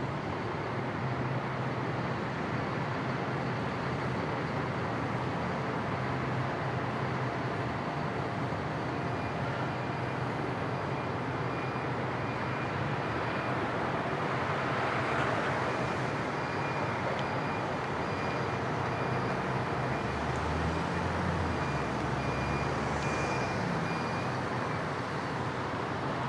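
Steady city road traffic noise. It swells as a vehicle passes about halfway through, and a deeper low rumble follows a few seconds later.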